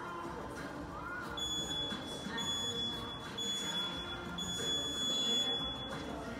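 An electronic beeper sounding a high steady beep four times, about a second apart, the last beep longer than the first three.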